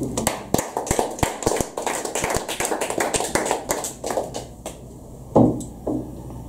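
A small audience applauding with many overlapping hand claps, thinning out and stopping after about four and a half seconds.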